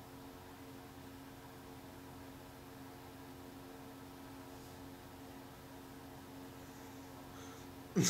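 Faint steady hum and hiss of room tone, with no distinct events.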